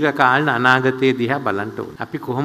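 Only speech: a man giving a speech in Sinhala into a podium microphone, talking without a pause.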